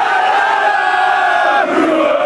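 Football crowd chanting in unison, holding a long note that steps down in pitch about one and a half seconds in.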